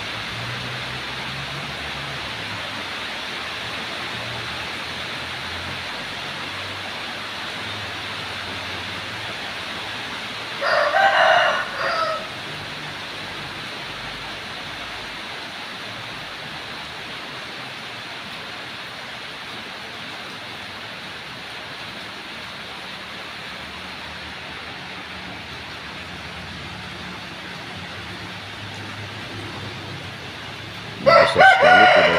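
A rooster crows once, a little over ten seconds in, a loud call of about a second and a half ending in a short tail, over a steady background hiss.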